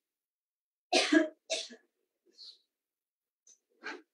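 A person coughing: a quick run of coughs about a second in, and a single cough near the end, with silence between.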